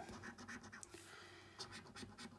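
Coin scratching the scratch-off coating from a paper scratchcard: a quick run of faint, short scrapes.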